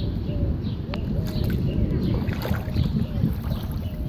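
Feet in slide sandals wading through ankle-deep floodwater on a paved street, the water sloshing and splashing with each step, over a heavy rumble of wind on the microphone.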